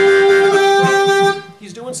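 A single long note held steady on a harmonica cupped in the hands, cut off about a second and a half in.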